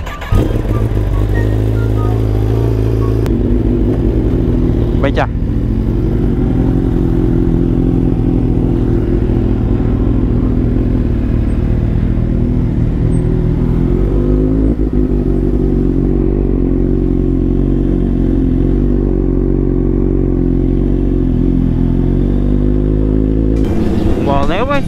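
Motorcycle engine running at a steady pace while riding, heard from an onboard camera. A low, even rumble cuts in just after the start and holds almost unchanged throughout.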